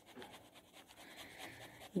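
Faint scratching and rubbing of a writing tool drawing and labelling a diagram.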